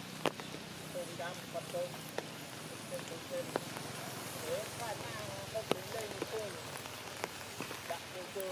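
Rain dripping on tree leaves: a steady patter with scattered sharp drop ticks, under faint distant voices.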